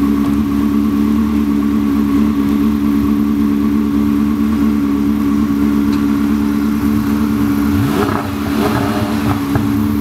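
A sports car engine idling steadily, with a short rising engine sweep about eight seconds in.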